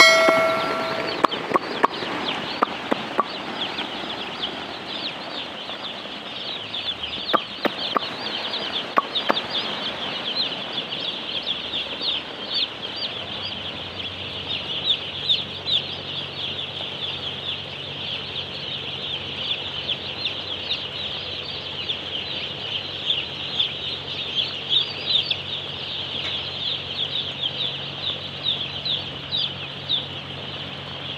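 A crowd of day-old chicks peeping nonstop, many high, short chirps overlapping. A bell-like chime rings right at the start, and a faint steady low hum joins about halfway through.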